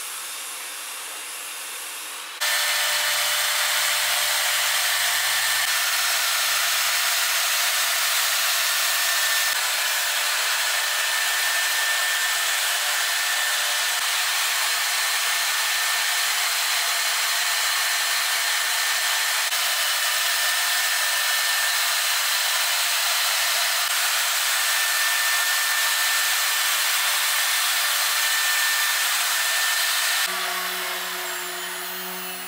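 Workshop power machinery running: a loud, steady rushing noise with a thin high whine, switching on abruptly about two seconds in.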